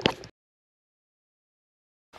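A brief clatter of the camera being handled, which cuts off a fraction of a second in, followed by dead digital silence.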